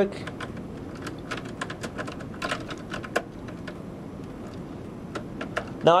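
Small irregular clicks and taps of a line wire being handled and pushed back into a variable speed drive's power terminal block, over a steady low background noise.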